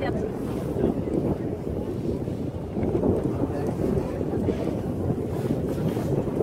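Steady low rumble of wind buffeting the microphone on a boat's open deck at sea, over the noise of the boat and the water.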